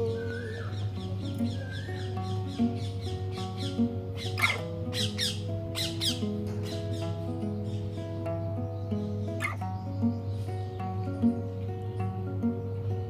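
Small-bodied acoustic guitar being fingerpicked, a steady run of single plucked notes over a low drone. A few sharp high calls cut across it, about four and a half seconds in and again near nine and a half seconds.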